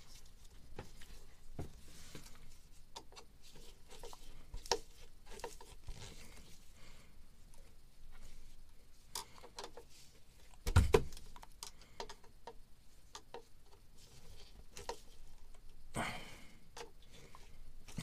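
Scattered light clicks, taps and scrapes of hand work with a screwdriver on hose clamps and fittings, with one louder knock about eleven seconds in.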